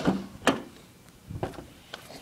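A car door being opened: about four short sharp clicks and knocks from the handle and latch, the loudest about half a second in.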